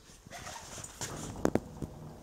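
Quiet shuffling and movement noise with a few light clicks and knocks, the sharpest about one and a half seconds in, as the camera is carried and handled.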